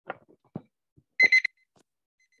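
Electronic timer alarm beeping: a quick run of short, high beeps about a second in, the signal that the time set for answering is up. A couple of faint knocks come just before it.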